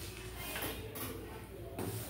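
Faint rustling and handling of paper sheets on a table over a steady low room hum, with a short sharp scrape or tap near the end.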